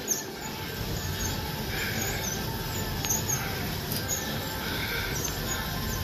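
Star Trac stationary exercise bike being pedaled steadily at cool-down pace, a low steady whir with a faint squeak recurring about once a second.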